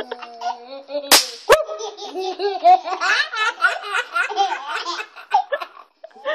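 Two sharp cracks of snap pops (paper-wrapped novelty firecrackers) bursting on concrete about a second in, the first the louder, half a second apart. A baby then laughs in quick repeated bursts for several seconds.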